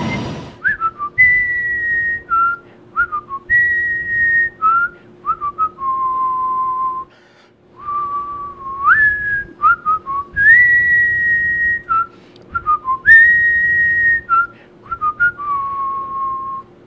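A person whistling a slow melody: long held notes joined by quick gliding flourishes, with a brief pause midway, over a faint steady hum.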